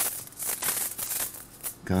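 Irregular rustling and rattling noises: a run of short, scratchy bursts.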